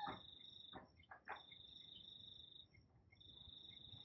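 A faint, high insect trill in long, even stretches, breaking off for about half a second after two and a half seconds and then starting again. A few faint soft knocks come about a second in.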